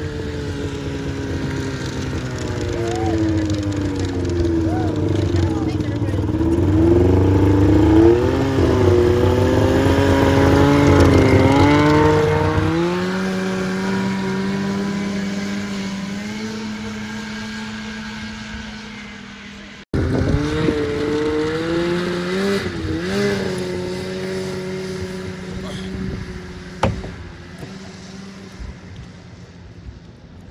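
Snowmobile engine revving as it passes close by, its pitch rising and falling, loudest about 8 to 12 seconds in, then fading as it rides away. After a sudden break about 20 seconds in, the engine is heard again, revving and fading into the distance.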